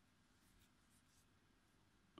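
Near silence, with only a few faint ticks from a crochet hook working through yarn.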